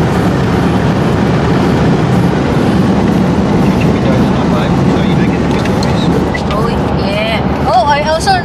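Steady low rumble of tyre and road noise inside a car cruising on a highway. A voice starts up near the end.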